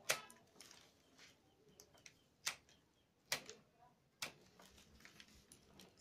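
Sharp clicks of the excess binding strip being snipped off a woven basket handle: four loud ones, near the start and then about a second apart later on, with a few lighter ones between.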